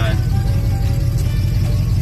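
A vehicle's engine running with a steady low rumble, heard inside the cabin, under soft background music with a few held notes.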